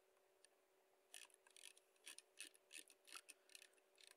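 Faint ticking of a computer mouse's scroll wheel as a list is scrolled, about nine irregular ticks starting about a second in, over a faint steady electrical hum.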